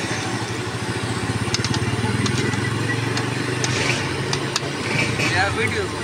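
Pakoras deep-frying in a karahi of hot oil: a steady sizzle over a low steady hum, with a few light clicks of a metal slotted spoon against the pan.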